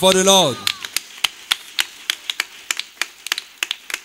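Scattered hand claps from a small congregation answering a call to applaud: irregular sharp claps, several a second, thin rather than a full ovation.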